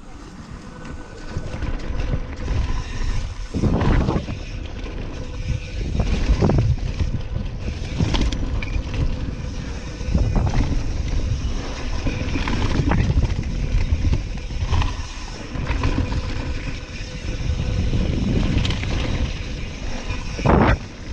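Wind rushing over the camera microphone and tyres rolling on a dirt trail as a Santa Cruz Hightower mountain bike descends at speed, with sharp knocks and rattles from the bike over bumps.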